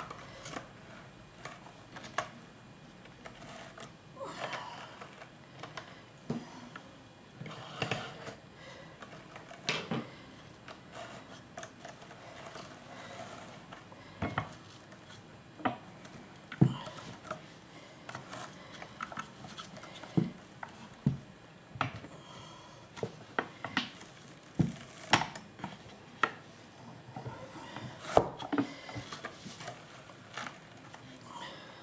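Wooden drum carder handled while a thick fleece batt is worked off its large toothed drum: fibre rustling against the metal carding teeth, broken by irregular clicks and knocks from the wooden frame and drums, which grow sharper and more frequent in the second half.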